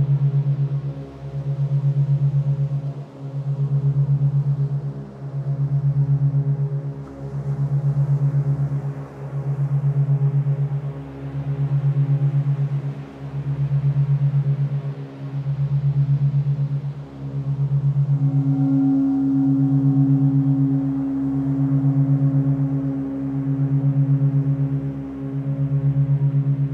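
Meditation drone built on a low 136.1 Hz tone carrying an 8 Hz monaural beat: a fast, even pulsing inside slow swells that come about every two seconds. Fainter sustained tones hum above it, and a higher steady tone joins about two-thirds of the way through.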